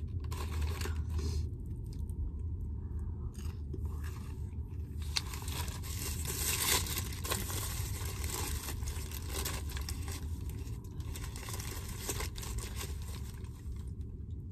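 Paper fast-food wrapper rustling and crinkling as a sandwich is unwrapped and handled, with some chewing, over a steady low hum.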